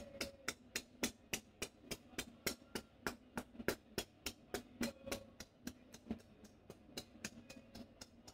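Palm-together chopping strokes of an Indian head massage: a barber's pressed hands striking the top of an oiled head, each stroke a hollow clap, in a rapid even rhythm of about five a second.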